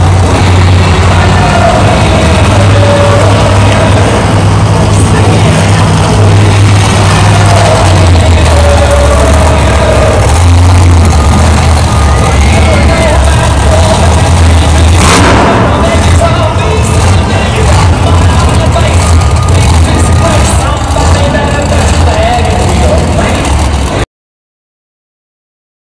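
Monster truck engine running loud in an enclosed arena, its pitch stepping up and down with the throttle, mixed with the arena's PA announcer and music. A single sharp crack about fifteen seconds in.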